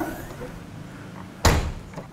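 The trunk lid of a 1992 BMW E36 convertible slammed shut: one loud thud about one and a half seconds in.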